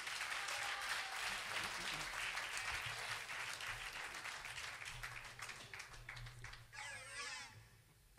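Live concert audience applauding, the clapping slowly dying away; a voice speaks briefly near the end.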